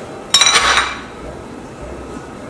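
Ceramic ramekins and china plates clinking together: one short, ringing clatter about a third of a second in.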